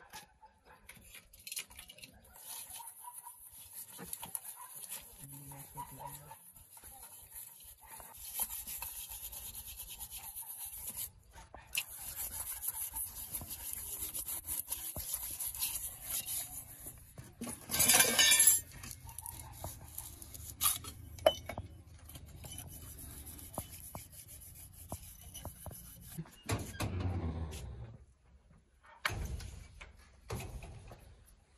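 Steel bowls and pots being scrubbed by hand, with irregular scraping and rubbing and light metal clinks. There is a brief loud scrape about two-thirds of the way through.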